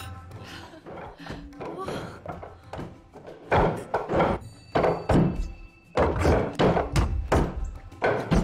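Hard wooden knocks of arms and hands striking the arms and body of a wooden wing chun training dummy, in quick runs of about three a second that grow loud from about halfway in, over film music.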